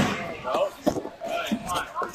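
A few sharp slaps and knocks as a gymnast's hands strike a pommel horse and its pommels while he swings through a routine, with voices talking in the background.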